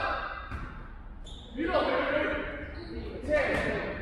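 Basketball bouncing on a wooden gym floor during play, with voices calling out, echoing in a large hall.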